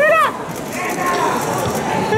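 A single short, high-pitched whoop from a voice in the audience, rising then falling in pitch. It is followed by quieter hall noise.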